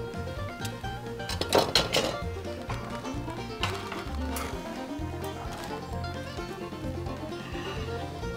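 Background music with a steady bass line, over a few sharp metallic clinks, loudest about one and a half to two seconds in, as a knife and a hinged wire grill basket are handled.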